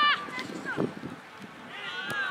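High-pitched voices shouting during a football match. A loud call cuts off just after the start, a short cry falls in pitch a little before the middle, and another long call, falling in pitch, begins near the end.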